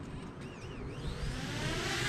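DJI Mavic Mini drone's propeller motors starting and spinning up for takeoff: a whine that rises in pitch and grows louder from about half a second in.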